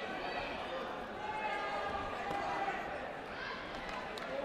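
Sports-hall ambience: several people talking in the hall, with a few dull thuds.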